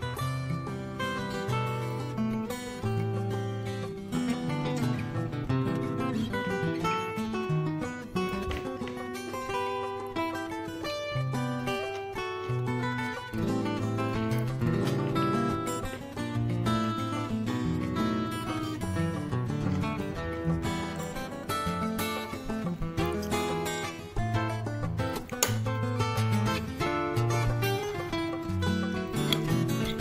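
Background instrumental music led by plucked acoustic guitar, a busy run of changing notes.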